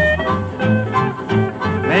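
A 1940s country boogie band recording playing between sung lines, with a steady, bouncing bass beat. The singer comes back in just at the end.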